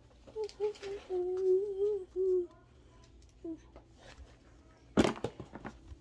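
A young girl humming a short tune for about two seconds, on a fairly even pitch with small wobbles. A brief sharp knock near the end.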